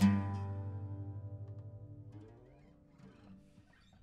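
Acoustic guitar's closing chord, strummed once and left to ring out, dying away over about two and a half seconds as the song ends.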